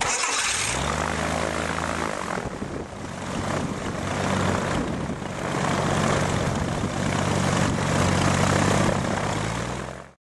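Chevrolet car engine on a propeller test stand firing up and catching: the revs climb over the first couple of seconds, then it runs steadily with the propeller turning, its pitch rising and falling slightly.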